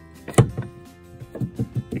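A single sharp knock about half a second in, a hand striking the metal doffer door and latch on a cotton picker row unit, over background music.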